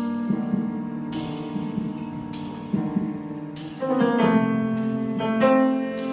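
Live jazz piano trio playing: a grand piano sounds sustained chords over an upright double bass, with cymbal strikes from the drum kit about once a second. About four seconds in, a louder new piano chord comes in.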